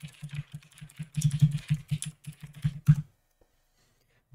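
Typing on a computer keyboard: a quick run of keystrokes for about three seconds, ending with one louder keystroke.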